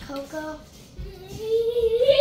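A child singing or humming without words: a few short notes, then one long held note starting about one and a half seconds in.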